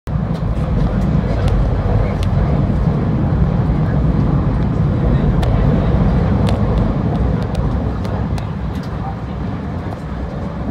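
TRA Puyuma Express tilting electric train (TEMU2000) running: a loud, steady low rumble with scattered sharp clicks, easing off slightly in the last few seconds.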